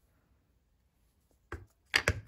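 Near silence, then two sharp plastic clicks near the end, the second louder, as an ink pad and a clear photopolymer stamp on its block are handled to ink the stamp.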